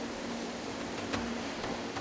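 Steady background noise, an even hiss with a few faint clicks.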